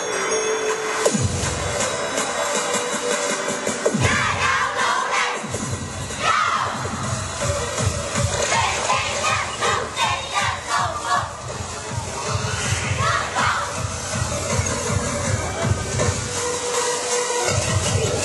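A children's cheerleading squad shouting during its routine, with a crowd cheering, over music with a beat.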